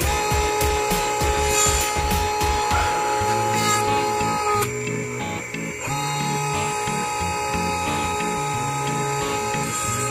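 Background music with a stepping bass line, over the steady whine of a dental laboratory lathe spinning a carbide bur. The whine drops out for about a second midway, then resumes.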